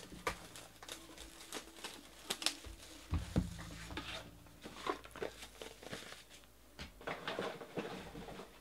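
Hands opening a trading card box: cardboard rustling and scraping with crinkling wrapper and scattered light taps, loudest a pair of knocks about three seconds in.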